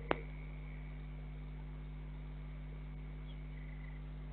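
A steady low hum with a faint high whine above it. A single sharp click comes just after the start, and a brief faint chirp comes near the end.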